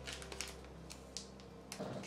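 A few faint, sharp clicks and ticks of plastic nail-file packets being handled, over a low steady hum.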